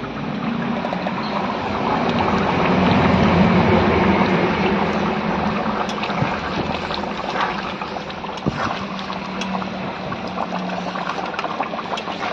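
Potato curry (aloo dum) gravy boiling hard in a steel kadai, a steady bubbling with a few small pops.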